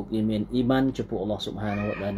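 A man speaking, with a higher-pitched call that rises and falls over his voice near the end.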